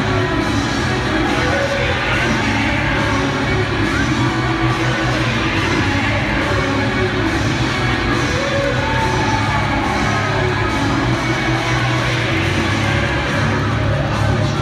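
Wrestlers' entrance music playing loud and steady over an arena sound system, with a crowd cheering and shouting under it.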